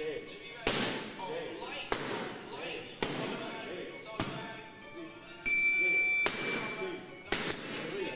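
Punches smacking into boxing focus mitts: about five sharp smacks at uneven spacing. A high steady tone sounds for under a second a little past the middle.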